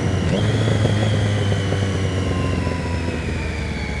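Motorcycle engine running steadily under the rider, its pitch easing slowly down through the few seconds.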